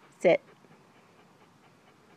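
A corgi puppy panting faintly, mouth open and tongue out.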